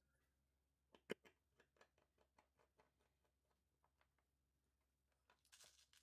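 Near silence, with faint clicks and ticks of small parts and a hand driver being handled on a workbench. The sharpest click comes about a second in.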